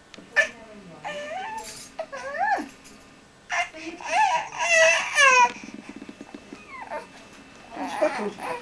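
A young baby fussing and squealing: several short, high-pitched cries that rise and fall, then a longer, louder wavering cry about four seconds in.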